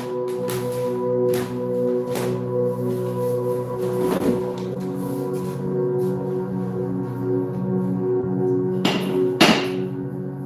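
Slow ambient music with held, steady notes, broken by a few short knocks or swishes, the loudest two close together near the end.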